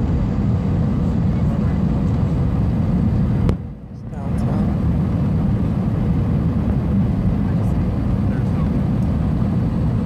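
Airbus A319 cabin noise on approach: a steady low roar of the jet engines and airflow, heard from a window seat. About three and a half seconds in there is a click and the level drops sharply for under a second before the roar returns.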